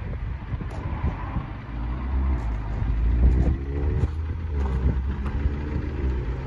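A motor vehicle running close by, its sound swelling twice, over a heavy low rumble of wind on the microphone.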